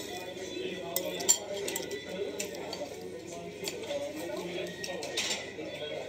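Cutlery clinking against plates and dishes while eating, with one sharp, louder clink a little over a second in, over a murmur of background chatter.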